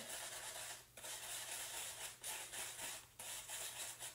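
A paintbrush mixing red acrylic paint with a dab of black on a palette to darken it: faint, steady scratching and rubbing that breaks off briefly twice.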